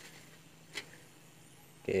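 One light click of the perforated steel skimmer against the wok about three-quarters of a second in, over a faint steady hum.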